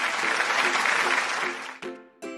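Recorded applause sound effect over light background music, fading out near the end.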